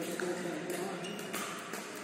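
Pickleball rally: two sharp pops of paddles striking the plastic ball, about 0.7 s apart, over steady hall noise.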